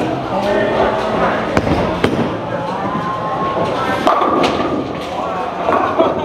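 Bowling alley sounds: a few sharp thuds and knocks of bowling balls on the lanes and pins being struck, over steady background chatter of other bowlers.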